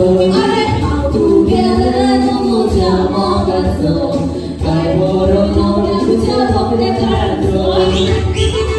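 A man and a woman singing a duet into microphones, with musical accompaniment underneath.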